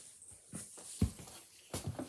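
Faint rustling with a single low thump about a second in, then a few soft short noises near the end.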